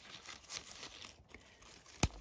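Faint rustling and small crackles of plum leaves and twigs as a hand moves among the branches.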